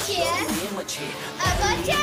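Young girls' voices talking, one exclaiming "Oh", over background music with a low thump about one and a half seconds in.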